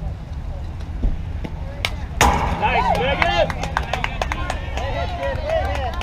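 A softball pitch smacks into the catcher's mitt about two seconds in, with one sharp crack. Players and fans shout encouragement right after it, over a steady low rumble of wind on the microphone.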